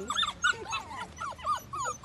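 A small puppy whining in a quick run of short, high cries, several a second.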